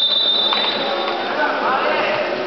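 A referee's whistle blown once: a steady shrill tone, strongest for about half a second, then fading out over the next second, over the constant noise of a busy gym. Basketball shoes squeak on the hardwood court near the end.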